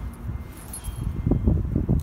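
Wind rumbling and gusting on a phone microphone, with handling noise, loudest in the second half. A faint, brief high ringing sounds about halfway through.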